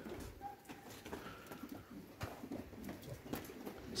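Faint outdoor background with a bird calling in the distance, and a few light handling clicks.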